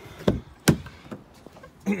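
Exterior door handle of a Chevrolet Trailblazer pulled and the latch releasing as the door opens: two sharp clicks less than half a second apart, the second louder. A throat clear follows near the end.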